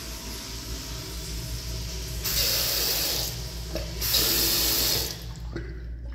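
Water running from a bathroom sink's two-handle faucet in two short bursts of about a second each, over a steady background hiss.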